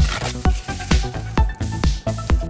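Music with a steady electronic beat, a kick drum striking a little over twice a second under sustained synth tones.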